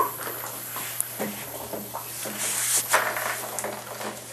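Clothing rustling close to the microphone, with scattered light clicks and knocks. The loudest burst of rustling comes about three seconds in.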